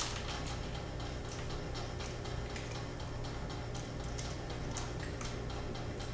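Faint, regular ticking that repeats several times a second over a low, steady electrical hum, with one sharper click right at the start.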